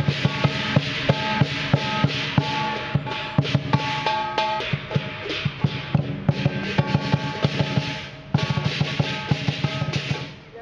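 Lion dance percussion: a large drum beaten in a fast, driving rhythm with clashing hand cymbals ringing over it. The playing dips briefly about eight seconds in, then comes back at full strength.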